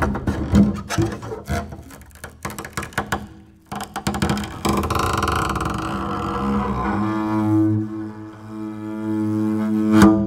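Solo double bass in free improvisation: a rapid string of percussive clicks and knocks off the strings, then scratchy, noisy bowing, settling about seven seconds in into a long held bowed note with many overtones.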